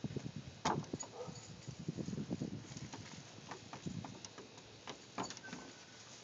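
A toddler's footsteps on the wooden boards of a playset deck: a run of light, irregular knocks and thuds, busiest in the first few seconds.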